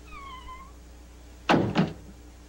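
A short high call that dips and rises at the start, then two heavy thuds about a second and a half in as a book tips off a shelf.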